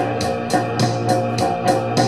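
Live post-punk band playing an instrumental stretch between sung lines: an organ-sounding keyboard holding chords over a steady bass line, with a ticking beat about four times a second.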